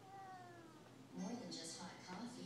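A domestic cat meows once at the start, a short call that falls slightly in pitch.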